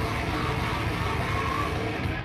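Hardcore band playing live, a loud, dense wall of guitar and drums with no break.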